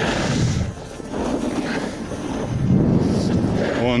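Snowboard edge scraping and sliding over packed snow through two turns, each a swell of rough scraping noise, with wind rushing on the microphone.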